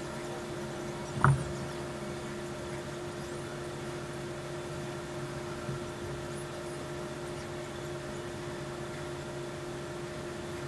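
Room tone: a steady low hum made of a few constant tones, with one brief short sound about a second in.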